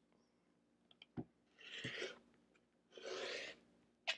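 OLFA rotary cutter rolling through layered cotton fabric against a ruler on a cutting mat, two rasping cutting strokes about a second apart, with a couple of light clicks just before.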